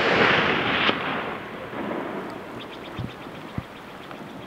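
Rolling report of a long-range rifle shot echoing back off the hillsides, loud at first and dying away over a few seconds. A sharper crack comes about a second in, and two faint knocks near the end.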